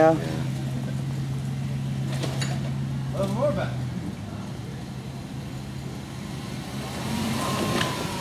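Jeep Wrangler engine running steadily at low revs as it crawls up a rutted clay trail, its hum fading about halfway through, with brief faint voices.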